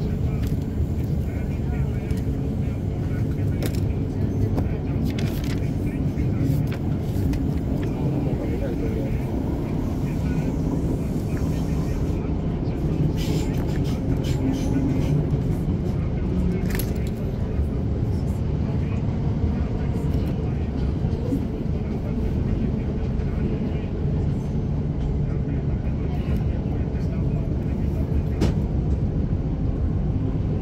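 Inside a moving Class 455 electric multiple-unit train: a steady low rumble of wheels and running gear on the track, with occasional short sharp clicks.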